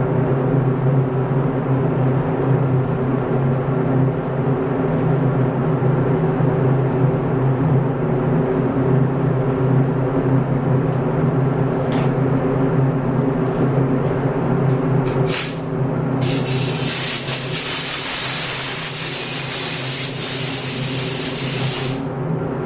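Steady hum of a paint booth's ventilation fan. About two-thirds of the way through, a short burst of compressed air, then an automotive paint spray gun hisses steadily for about six seconds and cuts off.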